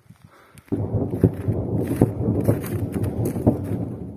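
Footsteps and rubbing, knocking handling noise close to a phone's microphone, starting about a second in: a muffled rumble broken by a few sharp knocks.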